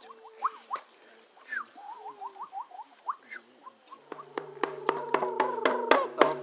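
Scattered short, quick chirps from small wildlife, then, about four seconds in, a hand frame drum starts being beaten with a stick at about four beats a second over a steady low tone, growing louder.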